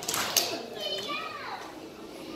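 Young children's voices chattering and calling out in a hall, with a few high voices rising and falling in pitch in the first second and a half.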